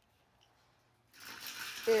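Near silence for about a second, then a wire shopping cart rattling as it is pushed over a concrete floor. A woman starts to speak near the end.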